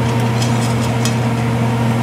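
A steady electric motor hum, with a few faint metallic clicks about half a second to a second in as a stainless steel steaming plate is lifted with a metal plate-lifter clamp.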